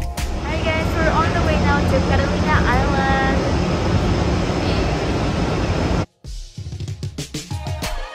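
Steady rushing noise of wind and engine on the open deck of a moving passenger ferry, with a person's voice exclaiming between about one and three seconds in. The noise cuts off suddenly about six seconds in, and faint background music follows.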